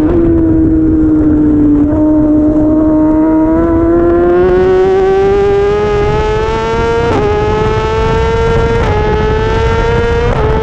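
Race motorcycle engine heard from an onboard camera at speed: the revs ease off for the first two seconds, then climb steadily under acceleration. Two quick upshifts, about seven and nine seconds in, each drop the pitch, with wind rush underneath.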